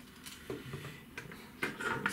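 A few light, scattered clicks and knocks from a feeder fishing rod's parts being handled on a table.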